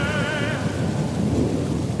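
Thunderstorm sound effect: a low rumble of thunder over steady, even rain.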